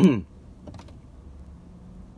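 A man's laugh trailing off in the first quarter second, then a quiet steady hum with a couple of faint clicks just under a second in.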